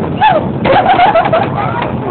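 A high, wavering voice-like cry, one short rise-and-fall and then a longer warbling stretch, over the sharp clacks of air hockey pucks and mallets striking the table rails.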